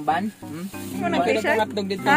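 People talking and laughing over background music, with a brief hiss near the start.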